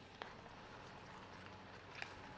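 Near silence: faint ice-arena ambience, with one faint click shortly after the start.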